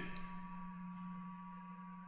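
Faint room tone with a steady low electrical hum and a thin, steady high whine.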